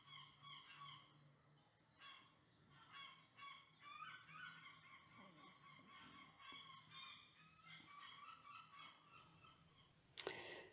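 Very faint, short bird calls repeating on and off, fading out near the end.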